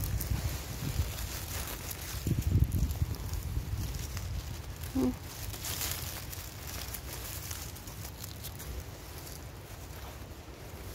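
Footsteps and rustling through dry fallen leaves on a forest floor, with low rumbling handling noise on the phone's microphone, loudest between about two and three seconds in. A brief short vocal sound about five seconds in.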